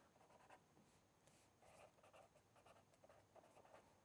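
Very faint strokes of a felt-tip marker writing block letters on paper, barely above silence.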